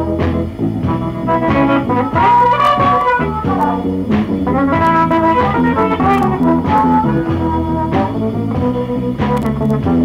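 Electric blues band on a 45 rpm single playing an instrumental passage with no vocals: a lead line of bent notes over a steady drum beat and low accompaniment.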